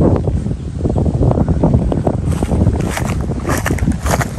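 Strong wind buffeting the microphone: a loud, uneven low rumble that gusts up and down.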